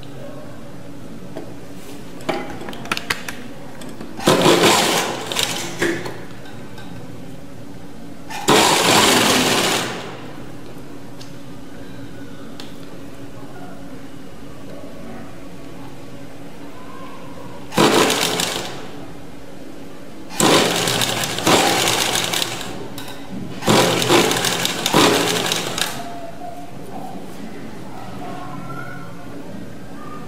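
Electric sewing machine stitching gathered fabric in five short runs of one to two and a half seconds each, with pauses between. A few light clicks come a couple of seconds in, and a steady low hum runs underneath.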